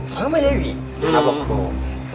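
Crickets trilling steadily in a high, unbroken whine behind the scene, with a man's voice murmuring quietly twice in between.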